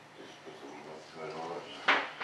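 Quiet, indistinct talk at a workbench, then one sharp knock near the end as a hard object meets the bench.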